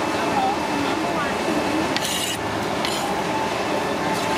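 Steady background din of a busy food stall with faint distant voices, and a brief hiss about two seconds in.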